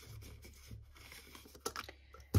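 Faint rustling of paper and a plastic binder envelope as a banknote is slid into the pocket and pressed flat, with a few soft ticks near the end.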